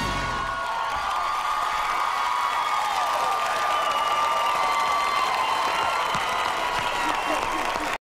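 A studio audience cheering and applauding, with high whoops and shouts held over the clapping. Music cuts off about half a second in.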